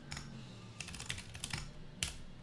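Computer keyboard being typed on, quietly, in short quick runs of keystrokes as a terminal command is entered.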